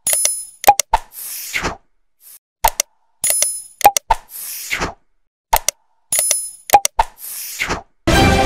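Animated subscribe-button sound effects: sharp mouse-like clicks, a bright bell-like ding and a short whoosh, the set repeating three times about every three seconds.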